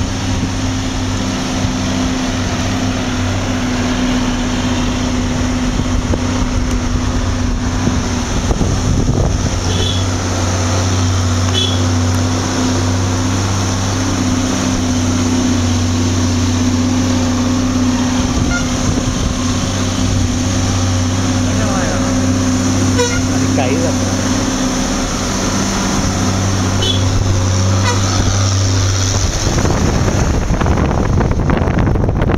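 A vehicle's engine running with a steady low hum under road and wind noise, heard from inside the moving vehicle. The hum stops a little before the end, leaving a rushing noise.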